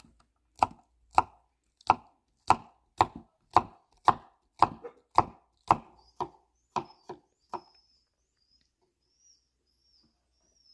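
Kitchen knife chopping cucumber on a wooden cutting board: sharp, even chops at about two a second, which stop about three-quarters of the way through.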